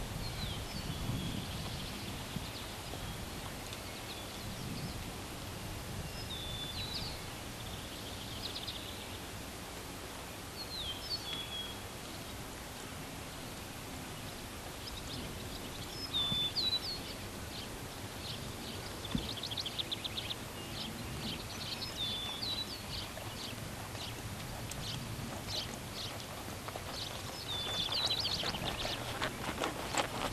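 Songbirds chirping and trilling in short repeated calls over a steady outdoor background, with the soft, muffled footfalls of a horse moving on arena dirt.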